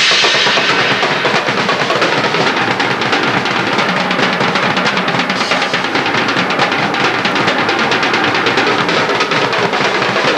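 Acoustic drum kit played solo in a fast, unbroken run of strokes around the drums, with cymbal ringing dying away in the first second.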